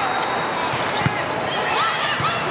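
A volleyball struck once, sharply, about a second in, with sneakers squeaking on the court during the rally.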